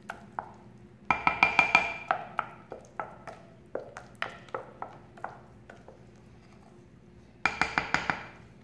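A spoon stirring mashed potato in a glass dish, clinking against the glass sides: a quick run of ringing strikes about a second in and another near the end, with scattered softer taps between.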